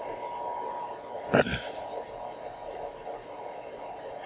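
Steady equipment hum, with one short knock about a second and a half in as the metal microscope stage is pushed into the SEM specimen chamber.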